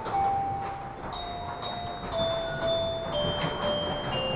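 A bell-like electronic chime melody of clear single notes, mostly stepping down in pitch, each held about half a second to a second, over the low running noise of the train.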